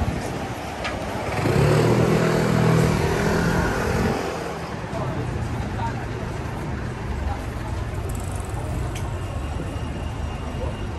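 Street traffic noise, with a motor vehicle driving close past about a second in: its engine note and tyre hiss swell and fade over about three seconds, then the general traffic hum carries on.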